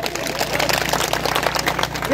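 A large crowd clapping: dense, irregular applause that fills the pause after a demand in a speech.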